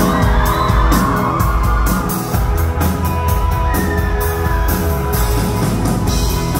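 Live rock band playing: drums with a steady cymbal beat, bass and electric guitars, loud in a concert hall.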